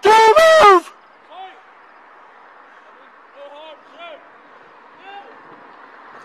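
A man's shouted command, very loud, for under a second at the start. Then a faint voice from farther off calls out briefly a few times over a quiet steady background.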